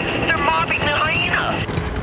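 Helicopter running steadily, heard from inside the cabin, with a voice over it.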